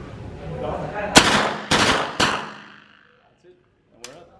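HK MP5 9mm submachine gun firing on three-round burst: three loud reports about half a second apart, starting about a second in, with echo off the range walls. The firing stops short in a malfunction, which the shooter puts down to a bad, worn magazine.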